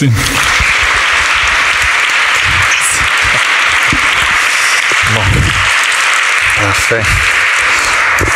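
Audience applauding steadily, the clapping easing slightly toward the end, with a man's voice heard briefly twice in the second half.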